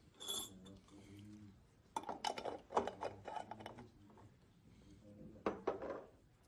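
Glassware clinking and knocking on a tiled bench as glass jars and test tubes are handled: a short ringing clink at the start, a flurry of clicks and knocks about two seconds in, and two more knocks near the end.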